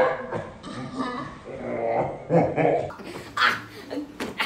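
Pillow-fight sounds played in slow motion: slowed-down, deep-pitched voices and pillow hits. About three seconds in, the sound switches back to normal speed, with quick, sharp swishes and hits.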